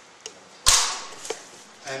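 A single sharp knock with a short hissing tail about two-thirds of a second in, between fainter clicks before and after it.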